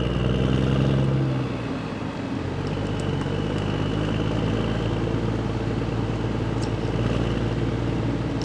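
Steady mechanical hum of shop machinery, with a few faint clicks of a hand tool on the screws of a 7.3 Power Stroke injector's top plate.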